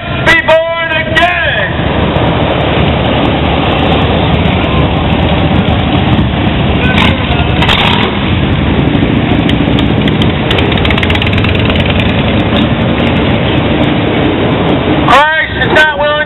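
Dense, steady noise of street traffic passing close by, cars and motorcycles, filling most of the stretch. A loud voice is heard at the start and again near the end.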